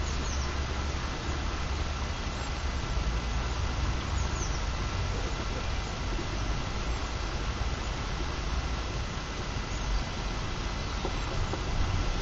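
Steady outdoor background noise: a low, fluctuating rumble of wind on the microphone with a hiss over it, and a couple of faint high chirps.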